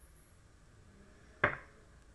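A single short click or tap about one and a half seconds in, fading quickly, against the quiet of a small room.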